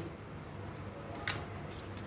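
Large taro (arbi) leaves being handled, with one brief rustle a little past the middle over low room hum.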